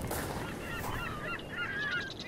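Herring gulls calling: a quick run of short cries, several overlapping, beginning about half a second in.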